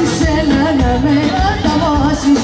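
Live band playing Greek folk dance music with singing, loud through open-air PA speakers, with a wavering sung melody over a steady drum beat.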